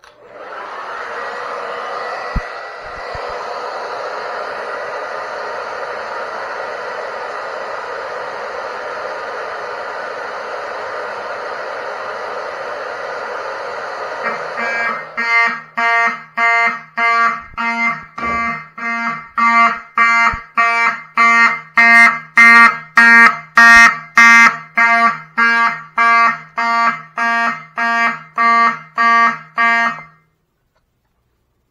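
A Conair 1875 hair dryer blowing steadily on a heat detector to heat it. About halfway through, the detector trips and fire alarm horns start sounding in an even pulsed pattern, about two pulses a second, much louder than the dryer.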